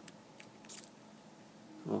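A couple of faint ticks, then one short, sharp, scratchy click about two-thirds of a second in, as the battery is connected to the RC receiver with a small hobby servo plugged into channel 1.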